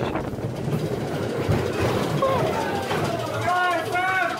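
Amusement park ride running, a steady noise, with brief vocal sounds over it in the second half.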